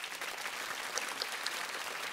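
Studio audience applauding, a steady even clapping.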